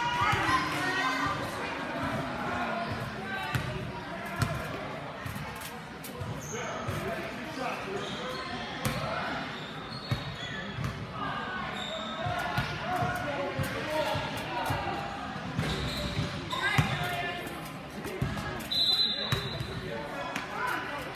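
A basketball bouncing on a hardwood gym floor, with repeated knocks echoing in the large gym, over indistinct voices of players and spectators. Short high sneaker squeaks come several times, one near the end.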